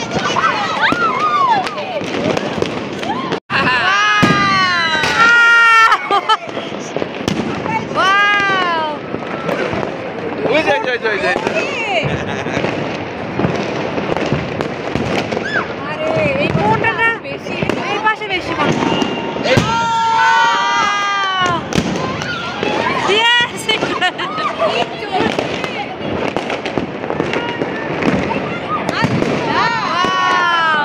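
Fireworks and firecrackers banging and crackling across the city, one after another, over a steady haze of noise. Voices shout and whoop in rising-and-falling calls throughout.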